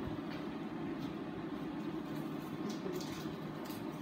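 A steady low mechanical hum, even in level, with a few faint light ticks in the second half.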